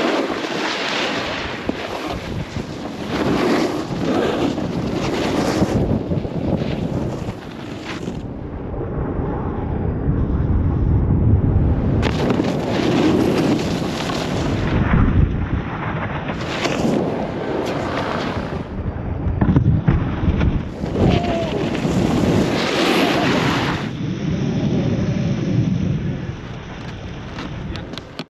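Wind buffeting a GoPro camera's microphone at riding speed, with the hiss and scrape of board edges on groomed snow. The noise swells and eases as the riders turn.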